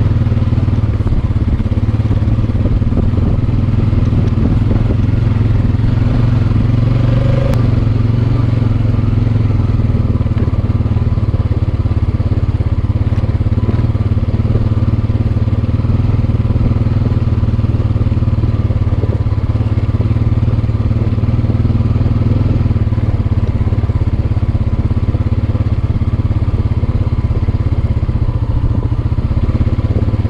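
Honda TRX-420 ATV's single-cylinder four-stroke engine running steadily while riding over a rocky trail, heard close up from the handlebars.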